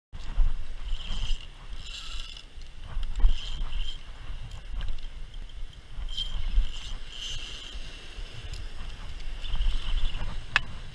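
Spinning fishing reel being cranked in short spurts, a high whir each time the handle turns while a fish is reeled in, over a low rumble of wind and handling on the rod-mounted camera.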